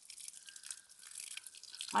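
Water pouring faintly from a plastic watering can onto the soil around a cabbage plant in a tub.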